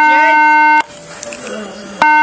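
A steady electronic alert tone sounds for just under a second, cuts off, and comes on again at the end, part of a repeating on-off beeping. A voice is heard faintly under it.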